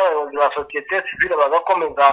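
A person speaking, with no other sound standing out.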